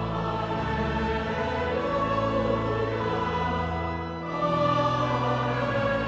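A choir and congregation singing a hymn in a large, echoing cathedral, held chords over low sustained organ bass notes. The chords change about two seconds in, and a louder phrase begins a little after four seconds.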